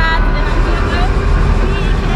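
Women's voices talking into a handheld interview microphone over a steady low rumble.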